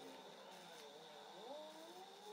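Near silence: faint room tone with a few soft wavering tones in the background.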